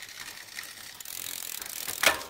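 Shimano Sora drivetrain on a Giant SCR 2 road bike: the chain runs over the chainring and rear cogs with a steady fine ratcheting tick as the cranks are turned by hand. A short, sharper sound comes right at the end. The seller calls the running very smooth and all but fault-free.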